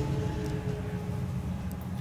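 Steady low rumble of highway traffic, with a few faint steady tones above it.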